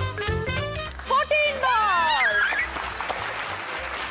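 Upbeat background music that gives way about a second in to several high voices shouting, their pitch swinging widely up and down.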